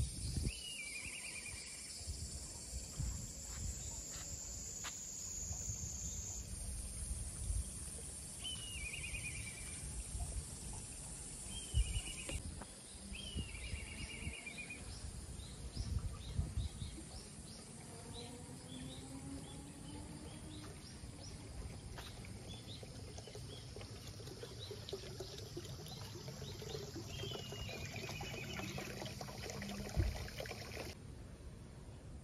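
Outdoor ambience: a bird calling about five times, each a short falling call that breaks into a quick trill, with smaller chirps in the second half, over a steady high-pitched insect drone. Low rumbles and a few dull knocks sit underneath.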